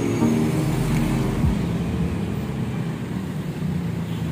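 Road traffic passing on a city street: cars and light trucks going by, with a low engine rumble that swells and rises about a second and a half in.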